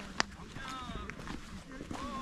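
Footsteps on a rocky trail, with one sharp click just after the start and a brief faint voice about a second in.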